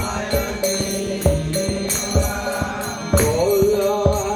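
Devotional mantra chanting, sung, over a steady percussion beat of about two strikes a second.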